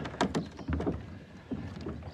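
Footsteps and a few sharp knocks on a floating plastic-cube dock, with water moving against the floats.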